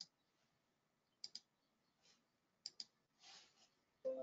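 Computer mouse clicking in quick pairs, three double-clicks spaced over a few seconds, with a soft brief rustle near the end; otherwise near silence.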